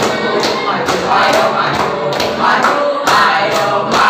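A group of teenage boys singing a yel-yel cheer song in unison, clapping their hands in a steady rhythm.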